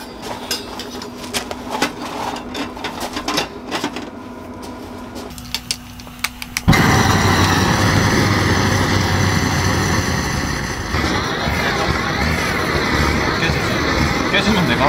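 Metal stovepipe sections clinking and clicking as they are fitted onto a small wood stove. About seven seconds in, a long-wand gas torch comes on suddenly and its flame runs with a loud, steady hiss and rumble, preheating the stove's glass and flue.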